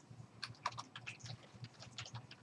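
Computer keyboard being typed on as a password is entered: a quick, irregular run of light key clicks, several a second.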